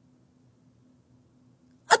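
Near silence with a faint steady low hum, broken just before the end by a woman starting to speak.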